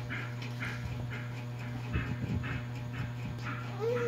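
Steady low hum under a faint, regular chirping, about three chirps a second, with a soft knock about halfway. Near the end a toddler gives a short rising-and-falling hum as she takes a spoonful of papaya.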